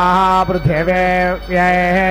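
Male voice chanting Vedic Sanskrit mantras in a steady, held tone: two long, level-pitched phrases with a short break for breath about halfway through.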